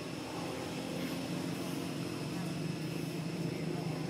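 Steady low engine drone, like a motor running at constant speed, with a thin steady high tone above it.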